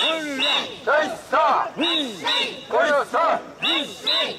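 A crowd of mikoshi bearers chanting in unison while carrying the shrine, a shouted call repeated in a steady rhythm about twice a second, each call rising and falling in pitch; this is the festival's 'wasshoi' carrying chant.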